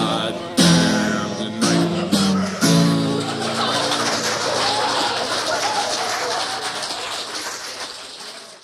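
The last sung phrase and strummed acoustic guitar chords of a live folk song. About three seconds in, audience applause takes over and slowly fades.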